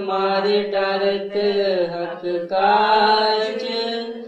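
A man's voice chanting in long held notes, with short breaks for breath about a second and a half and two and a half seconds in.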